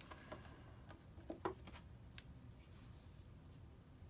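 Near silence: room tone with a few faint, short clicks and taps from small objects being handled, mostly in the first half.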